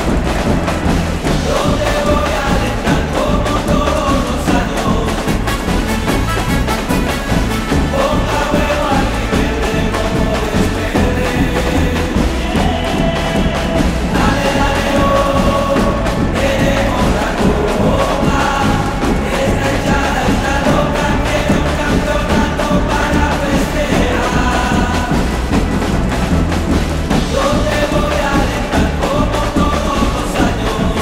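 Live band with a big marching drum line of bass and snare drums, pounding out a steady beat under a sung football terrace chant, with a group of voices singing along.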